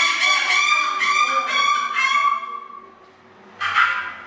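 Choir voices singing a high, held pitch in a regular pulsing rhythm, fading out about three seconds in, followed by a short breathy burst near the end.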